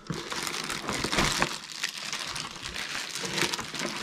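Clear plastic packaging bags crinkling and rustling as a hand blender and its attachments are handled and unwrapped from their box, with many small crackles and no pauses.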